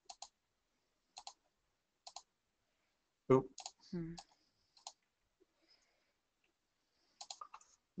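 Computer mouse clicks, mostly in quick pairs about once a second, as browser pages are navigated, then a short run of keyboard keystrokes near the end as a search is typed.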